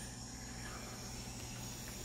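Steady, faint insect chorus of crickets from a rainforest field recording played through a small speaker, over a low steady hum.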